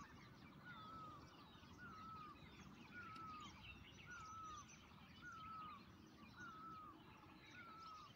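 Faint birdsong: one bird repeating a short slurred whistle about once a second, with other small chirps around it.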